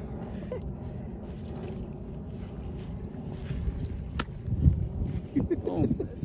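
Large buffalo fish flopping on grass while being held down, its body and tail smacking the ground in a few dull thumps, the loudest about four and a half seconds in.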